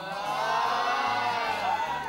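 A small group of people cheering together with many high voices at once, swelling in the middle and easing off near the end, over background music with a stepping bass line.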